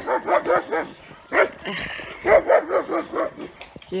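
A dog barking in quick runs of barks, several a second, with a break of about a second in the middle; it is barking at a passer-by on the trail.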